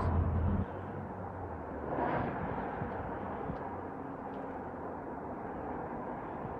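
Outdoor background noise: a low hum that cuts off about half a second in, then a faint steady hiss with a brief swell about two seconds in.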